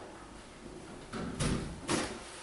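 Hallway front door being unlatched and pushed open from outside: a few knocks and clicks of the latch and handle, the loudest about a second and a half in and another near the end.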